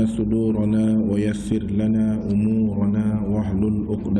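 A man chanting an Arabic invocation in long, held, melodic phrases.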